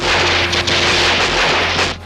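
Battle sound from a war film: a loud, steady rush of explosion noise that cuts off abruptly just before the end, over a low steady hum.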